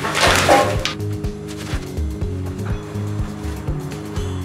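Background music with a steady bass beat. A short rushing noise sounds in the first second.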